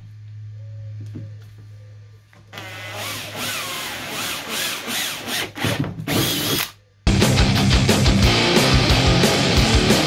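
Cordless drill boring a pilot hole through the top of a plastic water tank, the motor whining under load for several seconds. About seven seconds in, loud heavy rock music cuts in suddenly.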